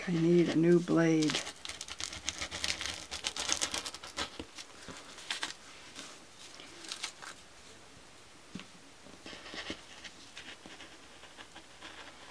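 Rotary cutter blade crunching through a paper template and eight stacked layers of fabric, a dense run of crackling ticks for a couple of seconds, then scattered ticks and paper rustling. The blade is not new, going through eight layers. A short wordless voice comes at the start.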